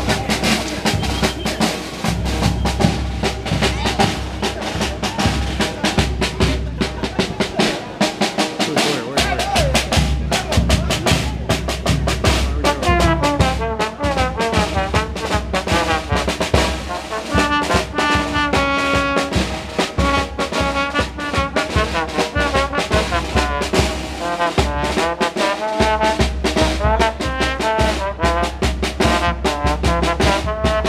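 Small street band of trombone, bass drum and snare drum playing a brisk tune: a steady drum beat with the trombone melody standing out more clearly from about halfway through. The bass drum drops out briefly twice.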